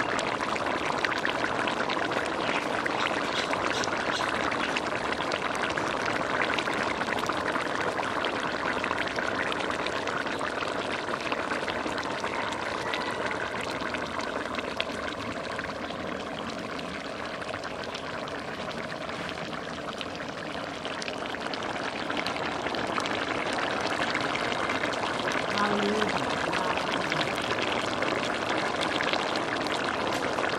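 Fish and cucumber curry boiling in a large metal cooking pot: a steady bubbling.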